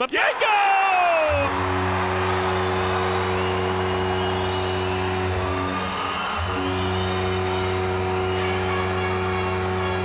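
Hockey arena goal horn blowing one long, steady low tone after a home-team goal, over a cheering crowd. The horn dips briefly about six seconds in, then carries on.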